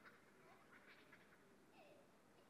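Near silence, with a few faint, short bird calls about half a second to a second in and once more near the end.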